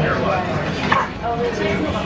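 Background chatter of diners in a busy restaurant dining room, with one short, sharp, high-pitched call about a second in.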